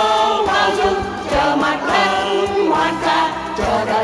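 A choir singing a slow Vietnamese song together into microphones, voices holding long notes over musical accompaniment.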